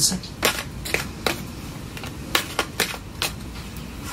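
Tarot cards being shuffled and handled, a string of irregular sharp card snaps and clicks, several close together about a second in and again past the halfway point.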